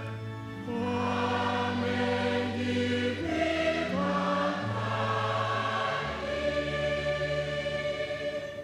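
Electronic keyboard playing slow, held chords as church psalm accompaniment, with a choir-like sustained tone and the chords changing every second or so.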